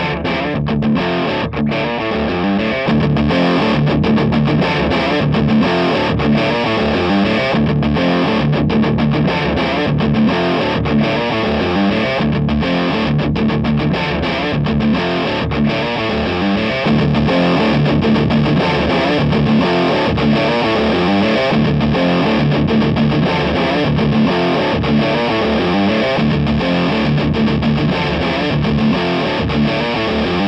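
Distorted electric guitar loop played through a Crate Vintage Club 50 tube combo's overdrive channel, with a lower-gain 12AU7 preamp tube in the V1 position in place of the stock 12AX7. It is heard through a single Shure SM57 on the speaker. The amp gain is turned up in steps, at about 3 s and 17 s.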